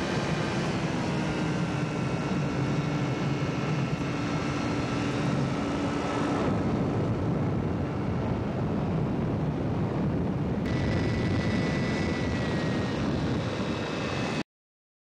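Engine and propeller of a two-seat powered hang glider (ultralight trike) running steadily in flight, heard from on board over the rush of air. The sound changes tone abruptly twice, about halfway and about three-quarters of the way through.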